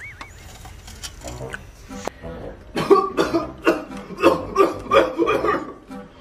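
A man coughing in a rapid fit: about ten short coughs in quick succession, starting about halfway through.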